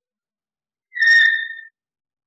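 Chalk squeaking on a chalkboard while a circle is drawn: one loud, high squeal about a second in, lasting under a second and dipping slightly in pitch.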